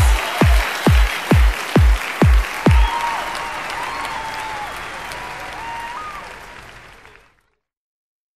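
The song's closing kick-drum beats: about seven deep booming hits, roughly two a second. They give way to audience applause that fades away and cuts to silence about seven seconds in.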